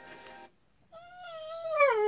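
A Staffordshire bull terrier whining while it watches dogs on the television. The single high whine starts about a second in, wavers and slides steadily down in pitch, and grows louder toward the end. Faint music from the TV is heard before it and stops about half a second in.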